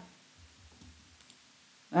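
A few faint clicks from a computer keyboard and mouse during code editing.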